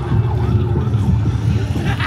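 Loud, steady low rumble from a haunted attraction's sound system, with a siren-like wail held through about the first second.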